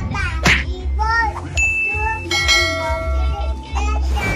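A young child talking in a high voice, then a short high ding and a ringing chime sound effect lasting about a second, over background music.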